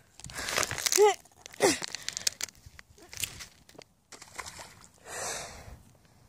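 Footsteps crackling on dry, cracked lakebed mud, with two short falling vocal sounds early on. About five seconds in, a thrown stick lands in the shallow water with a brief splash.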